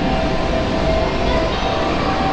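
Steady indoor background rumble of a shopping mall's open floor, with a faint steady hum and no sudden sounds.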